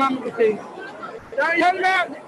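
Voices in an outdoor field recording: casual talk at the start, then a higher-pitched voice near the end, over faint background chatter.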